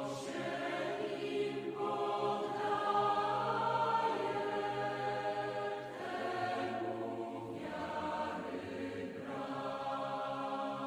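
A group of voices singing a hymn together in a church, in sustained phrases a couple of seconds long.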